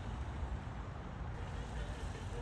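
Outdoor background noise: a steady low rumble with no distinct events.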